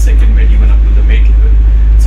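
A pilot boat's engine running with a steady, loud low drone, heard from inside its wheelhouse, with voices faintly over it.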